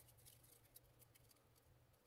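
Near silence, with a few very faint ticks of stuck-together old trading cards being pulled apart by hand.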